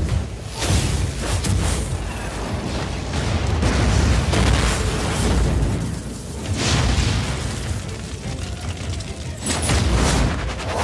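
Animated battle sound effects: a run of deep booms and blasts from fire and lightning energy attacks over a continuous low rumble, with dramatic score beneath.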